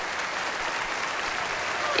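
Large concert-hall audience applauding, a steady dense clapping.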